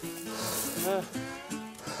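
Background music with held notes, and a man's strained gasp about a second in as he hauls himself up a steep slope, out of breath.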